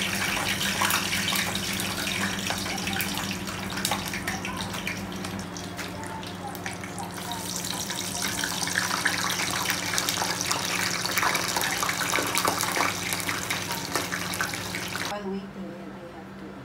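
Kitchen tap running at a sink, with small clicks and clatter, over a steady low hum. It cuts off abruptly about a second before the end.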